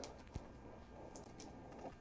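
Faint handling of a stack of trading cards: a single soft click about a third of a second in, then a few light ticks as one card is slid off the stack in the hand.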